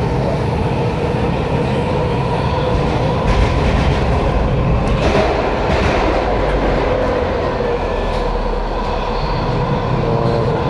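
Washington Metro railcar running on the rails, heard from inside the car: a steady rumble of wheels on track with a constant whine over it. The low rumble grows heavier a few seconds in.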